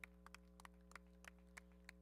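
Near silence: a faint steady electrical hum with faint, irregular ticks scattered through it, several a second.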